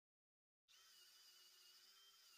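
Near silence: dead quiet for the first moment, then from about two-thirds of a second in a very faint steady hiss with thin steady tones.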